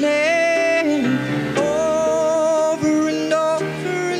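Live country-rock band playing a song's opening: a melody of long held, slightly bending notes over guitar and keyboards.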